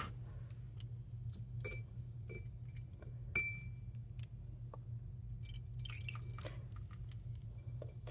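Faint clicks and small glass clinks as a fountain pen's nib section and syringe are handled against a glass jar of water, the loudest clink, with a brief ring, about three and a half seconds in. A steady low hum runs underneath.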